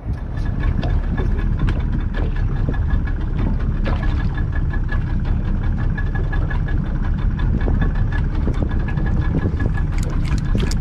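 A boat's engine idling steadily, with small ticks and knocks throughout.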